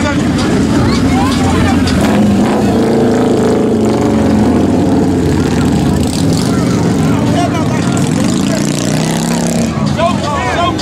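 Large motorcycles riding slowly past at close range, their engines running loud and steady with small rises and falls in pitch.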